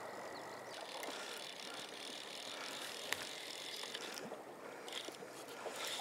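Steady, quiet rush of a shallow river's flowing water, with a few faint clicks.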